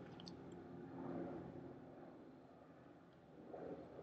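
Very quiet, soft sounds of lipstick being drawn across the lips, with small mouth sounds, swelling faintly about a second in and again near the end.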